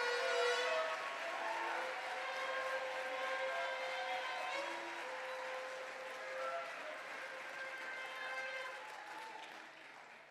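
Congregation applauding, with faint voices or held tones over the clapping; the applause dies away gradually toward the end.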